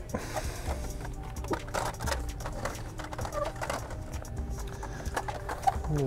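In-store background music playing, which the shopper calls very loud, with scattered light clicks of plastic blister-pack toy cars being handled on the pegs.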